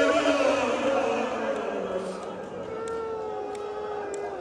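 A man's voice chanting in long, drawn-out held notes. The line that carries on from just before fades over the first two seconds, and a new steady held note begins near the three-second mark.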